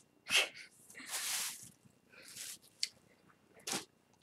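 A person's breathing: a few short breathy puffs and one longer exhale about a second in, with a small click near three seconds.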